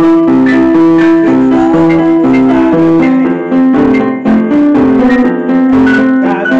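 Portable electronic keyboard on a piano voice, played loud: chords struck in a steady repeating rhythm over an alternating bass line.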